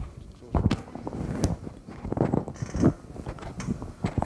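Handling noise from a clip-on microphone being adjusted on the chest: an irregular run of knocks, thumps and rubbing straight into the microphone, starting about half a second in.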